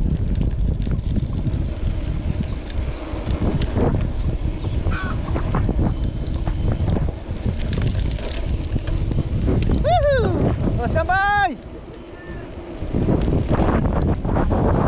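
Wind buffeting a helmet or handlebar action camera's microphone while a mountain bike rolls along a concrete road, a steady low rumble. About ten seconds in come two short calls that rise and fall in pitch, after which the wind noise dips for a moment and then returns.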